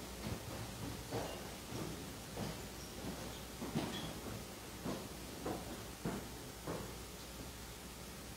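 Faint footsteps marching in an even cadence, about one step every 0.6 seconds.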